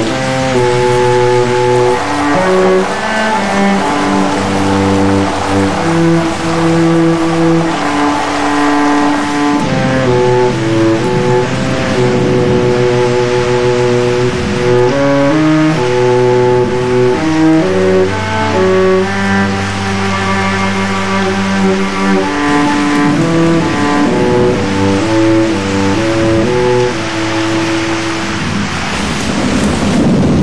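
Instrumental break of a pop song: a melody of held, stepping notes over a steady backing, with no singing.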